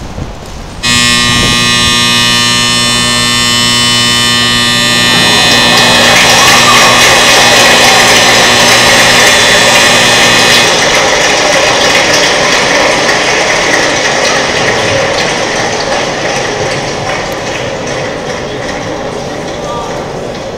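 Nippon TV's giant Ghibli clock (Nittele Ōdokei) starting its timed show: a loud sustained chord sets in suddenly about a second in and holds for several seconds. It then gives way to a denser, noisier mix of music and the clatter of the clock's moving mechanisms, slowly fading.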